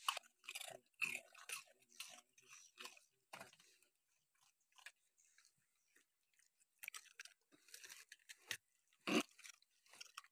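Dogs chewing and biting at pieces of cake taken from a hand, in short irregular bursts, with the loudest bite a little after nine seconds in.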